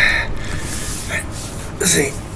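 A man's loud breathy gasp, followed by two shorter breaths about a second in and near the end, as he moves about on his hands and knees on the floor.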